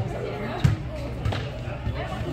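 Four dull thumps, evenly spaced about 0.6 s apart, over indistinct voices.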